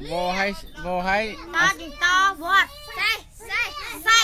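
Young children's voices speaking aloud in quick, short, high-pitched syllables.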